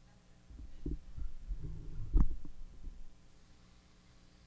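A run of dull low thumps and bumps, with one sharp knock about two seconds in, typical of a microphone being handled or moved close up.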